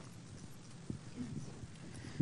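Quiet room tone with a few faint knocks from a handheld microphone being handled as it is passed from one person to the next.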